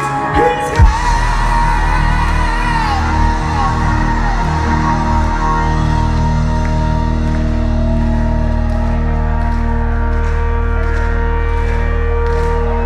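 Live rock band closing a song: a loud hit about a second in, then a long held final chord with bass and electric guitar ringing on. The singer's wavering vocal runs over the first couple of seconds of the held chord.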